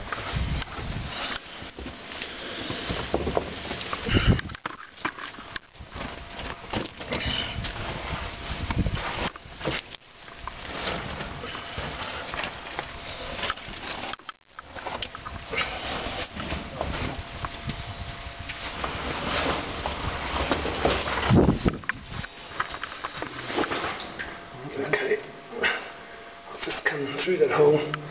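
A person clambering down into an old mine tunnel: irregular rustling, scraping and knocks of movement over rock and vegetation, with handling noise from the carried camera.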